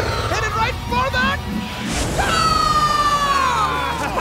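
Cartoon soundtrack of a goal being scored: music and short voiced sounds, then about halfway through a long pitched tone that falls slowly in pitch for about two seconds.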